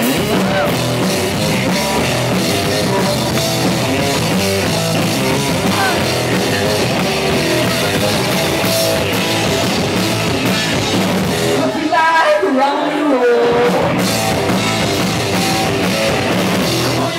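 Live rock band playing loud: electric guitars over a driving drum kit. About twelve seconds in the bass and drums drop back briefly and a wavering, bending line comes to the front.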